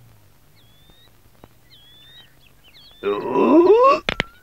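Faint, short chirps, like small birds, for the first few seconds. About three seconds in, a loud, drawn-out cry rising in pitch lasts about a second.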